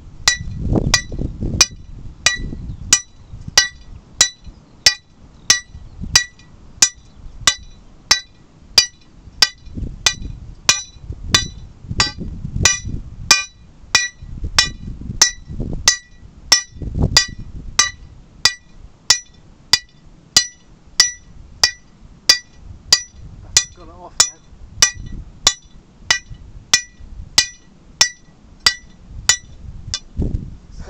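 Lump hammer striking the head of a steel drill rod held against rock, in a steady even rhythm of nearly two blows a second, each blow a sharp ringing metallic clink. This is two-man hand drilling the old way: one man holding the drill, one on the hammer, cutting slowly into the rock.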